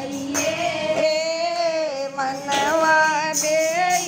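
Group of women singing a Haryanvi devotional bhajan to Shiva in unison, the melody wavering up and down, with hand-clapping keeping time.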